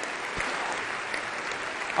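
Steady applause from a large assembly of parliamentarians, filling the chamber without a break.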